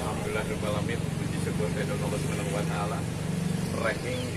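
Low murmur of men's voices over a steady low engine hum from a motorcycle.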